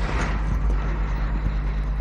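Lapel microphone handling noise: rustling and low bumps as the clip-on mic on a shirt front is fiddled with by hand, starting suddenly at the outset. Under it runs a steady low electrical hum.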